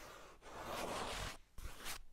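Fingertips rubbing across sketchbook paper close to a tiny microphone: a short stroke, then a longer sweep, then two brief brushes of the hand on the page near the end.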